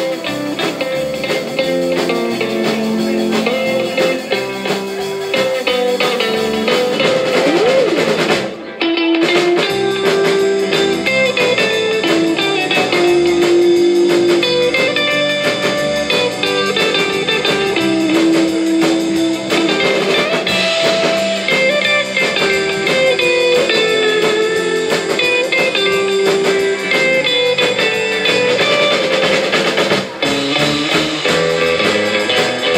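A live rautalanka band playing an instrumental: an electric lead guitar carries a slow melody of held notes over rhythm guitar, bass guitar and drum kit, amplified through a PA. The sound dips briefly about nine seconds in.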